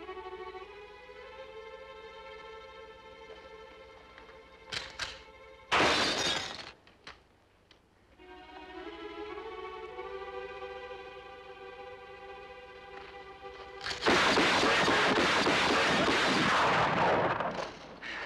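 Background strings hold sustained chords, broken by a single loud crack about six seconds in. Near the end comes a loud burst of rapid fire from a large-ring lever-action rifle, lasting about three and a half seconds, with glass bottles shattering.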